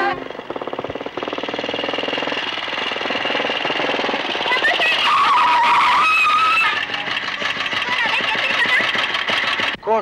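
Motorcycle engine running with a rapid, even exhaust beat as the bike rides up the road. Voices call out briefly over it, one near the end.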